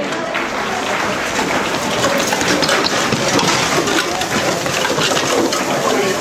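Costumes made of plastic bags, cans and bottles rustling and crinkling as the performers wearing them move: a dense, steady crackle full of small clicks.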